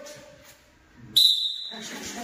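A single sharp blast on a coach's whistle, a steady high tone about half a second long, starting just past the middle. It signals the boxers to start the drill.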